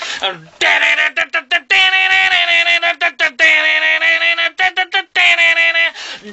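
A man's voice imitating a heavy guitar riff with his mouth: loud, buzzy notes held on one pitch, cut into a fast, stop-start rhythm of short stabs and longer held notes.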